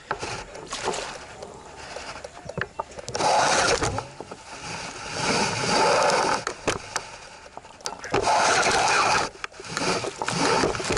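Fishing reel being wound in three bursts of rough, grinding noise, with knocks and clicks between them from the rod being handled close to the rod-mounted camera, as a fish is played.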